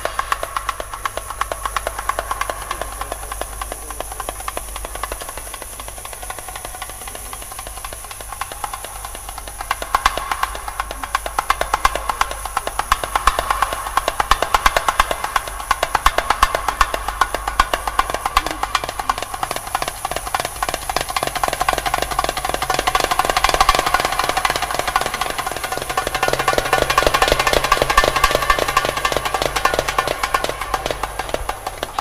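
Middle Eastern drum solo music for belly dance: fast, dense drumming that gets louder about ten seconds in and builds further toward the end.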